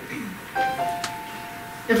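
Soft piano underscoring: a short note about half a second in, then two higher notes held together for about a second.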